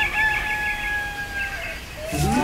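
Rooster crowing, its cock-a-doodle-doo ending in one long held note that sinks slightly in pitch and stops about a second and a half in.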